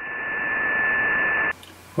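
Software-defined radio receiver in upper sideband giving out band hiss with a steady high whistle once the test transmission has ended. The hiss swells over the first second as the receiver's AGC recovers, then cuts off suddenly about a second and a half in.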